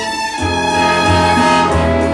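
Instrumental break of a late-1950s bolero recording: an orchestra with violins carrying a sustained melody over a moving bass line.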